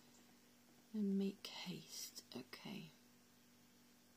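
A woman's voice, soft and partly whispered, muttering to herself for about two seconds from about a second in, over a faint steady hum.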